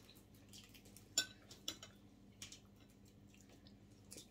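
Faint, scattered light clicks and taps of tableware at a meal, the sharpest about a second in.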